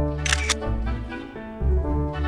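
Camera shutter clicking twice in quick succession about a quarter second in, over upbeat background music with a steady bass.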